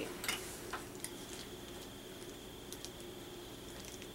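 Faint, irregular light clicks and taps of small hand tools and clay being handled on a tabletop, over a steady low room hum.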